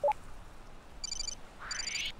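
Electronic beeping sound effect of a handheld video-call device connecting a new caller: two short bursts of high beeps, about a second in and near the end, the second with a rising sweep.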